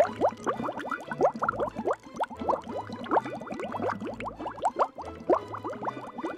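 Water bubbling: a dense run of quick plops, each rising in pitch, several a second.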